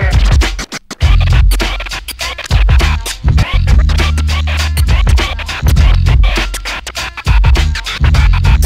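DJ scratching records on two turntables through a DJ mixer, over a beat with a heavy bass line. The music is chopped by many quick cuts, with a brief drop-out a little under a second in.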